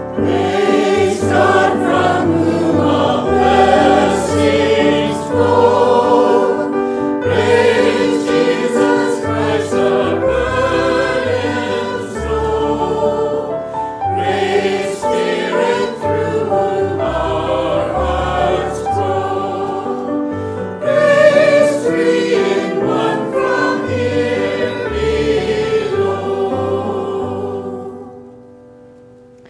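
A choir singing with keyboard accompaniment over held low bass notes. The music fades out at the very end.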